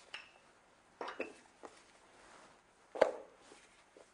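Wooden rolling pin working dough on a floured wooden counter: a few sharp knocks and clinks of hard kitchen objects, the loudest about three seconds in.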